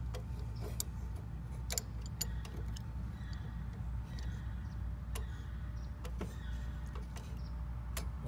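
A few sharp, scattered light clicks as a trip pin and its screw are handled and tightened onto the dial of a pool pump time clock, over a steady low rumble.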